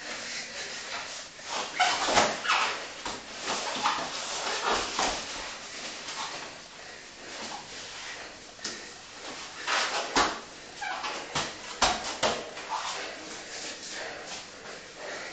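Two grapplers breathing hard and grunting as they wrestle, with bodies and limbs thudding and scuffing on the mats. It is loudest about two seconds in and again from about ten to twelve seconds in.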